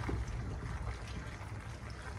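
Spatula stirring thick, cheesy macaroni in a stainless steel pot: soft, wet stirring sounds of noodles and melting cheese sauce.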